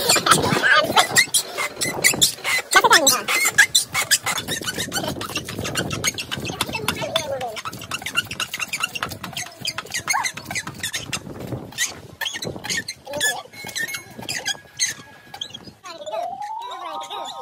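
A scissor jack being cranked with its handle rod, giving a quick run of clicks as it lifts the car to get at a flat tyre. Voices can be heard in the first few seconds.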